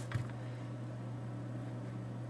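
A single light knock just after the start as a three-hole punch is placed and shifted on the paper, over a steady low electrical hum and quiet room noise.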